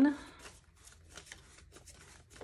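Paper banknotes being leafed through by hand: a faint, quick run of flicks and rustles as fingers pick bills from a stack.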